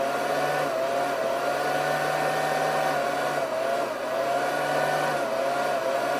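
Steady electrical whirring with a whine that slowly wavers in pitch and a low hum that comes and goes, typical of a power inverter and its cooling fan running under the load of a 200-watt immersion heater.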